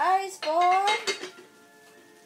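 Clicks and clatter of small pieces being handled in a red plastic bowl, mixed with two short drawn-out vocal sounds in the first second, then faint steady tones.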